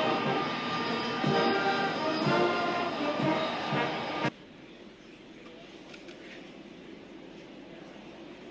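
Brass band playing a ceremonial piece that cuts off abruptly about four seconds in. After that there is only a low, steady background noise.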